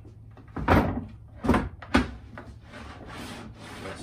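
Wooden crosscut sled, its sides freshly rubbed with machine wax, slid along the table saw bench: three loud knocks in the first two seconds, then a steady wood-on-wood rubbing.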